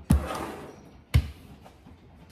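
Two heavy thumps about a second apart, the first followed by a brief rustle, as groceries are handled and put away in a kitchen.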